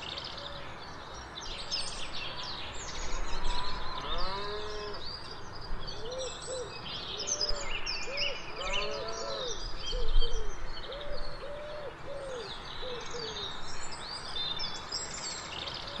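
Countryside ambience: many birds singing and chirping in short high calls over a steady soft hiss. Through the middle there is a run of lower, short, arching calls repeated in quick succession.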